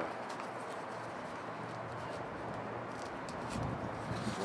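Faint handling noise from a small cardboard parts box being opened and a plastic-bagged speaker pulled out, over a steady outdoor background hiss with some low wind rumble near the end.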